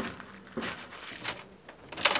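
A few footsteps, about two-thirds of a second apart, as a man walks up to an aircraft's boarding ladder and steps onto it.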